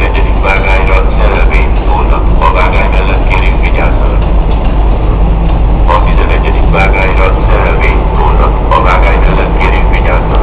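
Railway station public-address announcement over the platform loudspeakers, the voice echoing under the train shed, with heavy wind rumble on the microphone.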